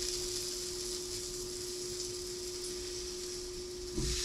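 Butter sizzling steadily as it melts in a hot cast-iron pan, with a steady low hum underneath.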